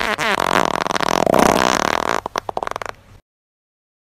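A long, buzzy fart sound effect that breaks into sputters near the end and cuts off about three seconds in.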